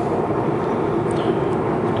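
Steady road and engine noise heard inside a car driving at highway speed, with a constant low hum under the tyre noise.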